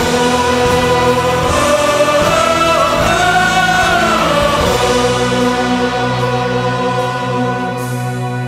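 Choir and orchestra performing worship music, with a vocal line that swells up and comes back down in the middle, then settles into a long held chord.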